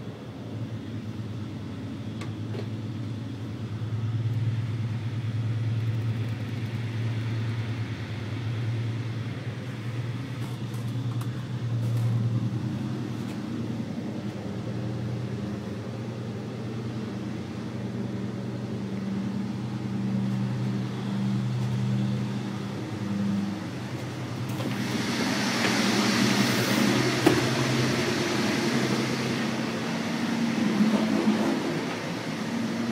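Steady running rumble of a night train heard inside a sleeper carriage, with a low hum throughout. About 25 seconds in, a louder rushing hiss joins it.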